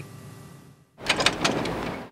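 Near silence for the first second, then about a second of loud outdoor background noise with a few sharp clicks or knocks in it.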